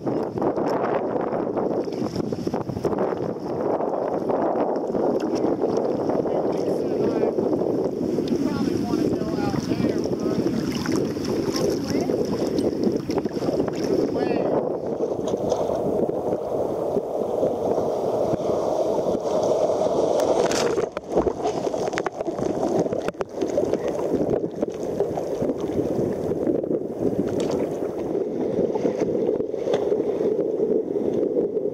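Choppy water slapping and sloshing against a sea kayak's hull as it is paddled, with wind buffeting the microphone, making a steady noise.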